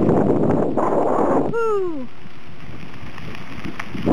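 Wind buffeting the microphone of a camera carried on a moving bicycle: a rushing rumble, strongest in the first second and a half, then softer and steadier. Just after the rush eases, a short voice-like sound glides down in pitch once.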